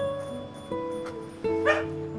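Gentle background music with plucked guitar notes, and a small dog gives one short yip near the end.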